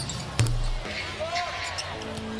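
Basketball game sound: a basketball bounces hard on the hardwood court about half a second in, and a few short sneaker squeaks follow, over steady arena crowd noise.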